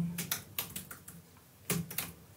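Typing on a computer keyboard: a quick run of keystrokes, a short pause, then another key press near the end.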